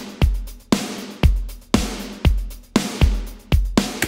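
Drum kit mix playing back from a recording session with no processing on the drum bus: kick and snare hits about two a second. The kick drum is very dry, while the snare sounds far away, drenched in reverb, as if each drum were in a different room.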